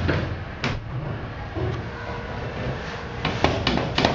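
Dover hydraulic elevator car running, a steady low hum inside the cab, with one sharp knock about half a second in and a few light knocks near the end.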